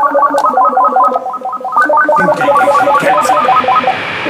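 Music: a fast plucked-string melody of many short, quick picked notes, with lower notes underneath; the picked run stops near the end.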